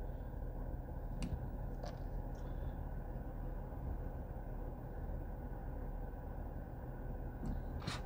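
Steady low hum of a car cabin, with a few faint clicks about a second in, near two seconds and again near the end.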